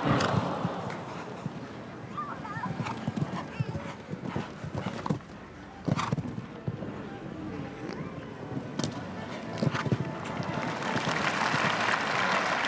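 Hoofbeats of a show-jumping horse cantering and jumping on grass turf, thudding irregularly, over crowd noise. Applause swells near the end as the round finishes.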